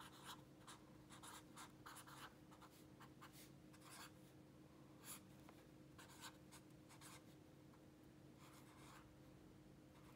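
Faint scratching of a felt-tip pen on notebook paper: short, irregular strokes as an equation is written out, over a faint steady hum.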